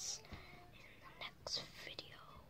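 A person whispering faintly: a few short, breathy hissing sounds with pauses between them.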